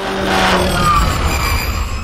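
Cinematic intro music: a synthesized swell over a deep rumble that builds to its loudest about halfway through and then begins to fade.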